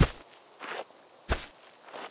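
Cartoon footstep sound effects for a small dinosaur walking: two sharp steps, one right at the start and another about a second later, with a faint scuff between them.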